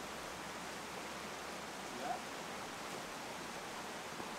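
Steady rushing of a mountain creek flowing over rocks, an even, unbroken wash of water noise. A single brief note sounds once about two seconds in.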